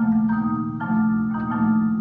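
Percussion ensemble of mallet instruments, marimbas and vibraphone, playing ringing chords struck afresh about every half second over a held low note. The piece draws on Balinese gamelan techniques.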